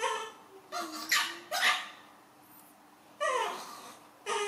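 Baby macaques crying: several short high-pitched calls, each falling in pitch, with the loudest about a second and a half in.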